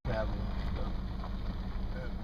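Steady low rumble of an idling vehicle engine, with a brief voice fragment right at the start.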